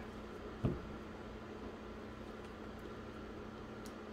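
Quiet room tone: a steady low hum over a soft hiss, with one brief soft low thud about half a second in.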